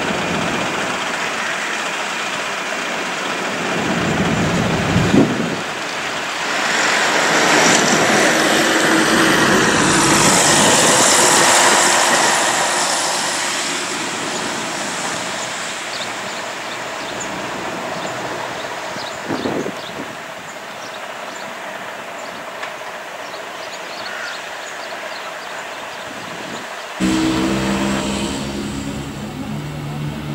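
Scania-engined Ikarus E95 coach running: a continuous rush of engine and road noise that swells for a few seconds and slowly eases off, then about three seconds before the end an abrupt cut to a lower, steady engine hum.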